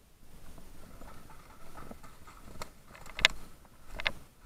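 Footsteps rustling through dry fallen leaves, with a few sharp clicks or snaps, the loudest about three quarters of the way through.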